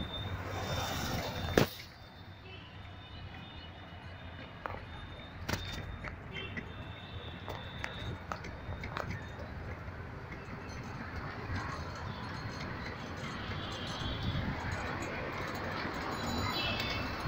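Slow, congested road traffic: vehicle engines and tyres running at low speed. A single sharp knock comes about one and a half seconds in, after which the traffic sound is quieter, with scattered clicks and faint high ringing tones.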